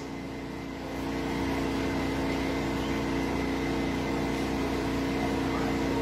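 A steady machine hum made of several held tones, growing a little louder about a second in and then holding level.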